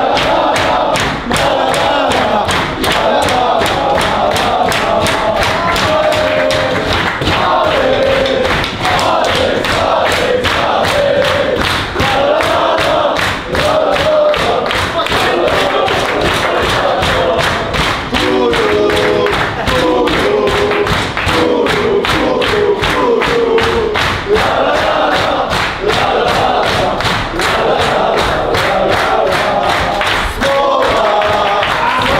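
A group of men singing and chanting together in a locker room, over fast, steady rhythmic hand-clapping.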